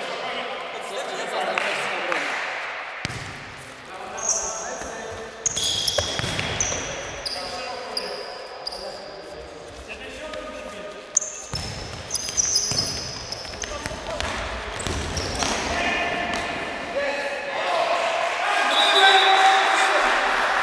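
Indoor futsal play: the ball is kicked and bounces on the hard sports-hall floor, shoes squeak sharply on the floor, and players call out, all echoing in the large hall.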